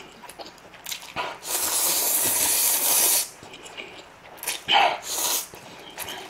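Instant ramen noodles being slurped up from chopsticks: a long, airy slurp of about two seconds in the middle, with shorter slurps before and after it.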